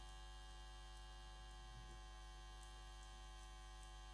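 Near silence with a faint steady electrical hum, like mains hum picked up by a microphone's sound system.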